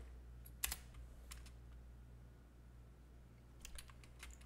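A few isolated computer keyboard keystrokes, faint: one about half a second in, a couple around a second and a half, and a short run near the end, over a steady low hum.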